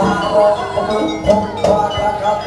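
Live jaranan gamelan ensemble playing: a sustained melody with a wavering pitch over drums, with two sharp drum strikes in the second half.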